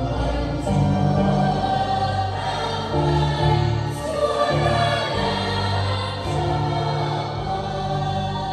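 A large choir singing a Vietnamese hymn in parts, with held chords that change every second or so.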